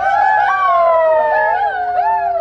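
Several voices holding one long shouted call together, the pitch sagging slowly, with shorter up-and-down yells breaking in near the end.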